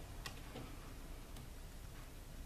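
Two or three faint ticks of paper being handled as foam adhesive dimensionals are pressed onto patterned cardstock, over a low steady room hum.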